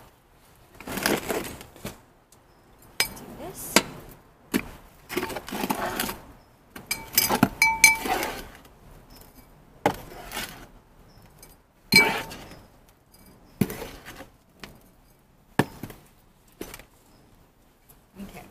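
Potting soil being scooped with a plastic hand scoop and poured into a ceramic pot, in repeated scrapes every second or two, with sharp clinks as the scoop knocks the metal bucket and the pot.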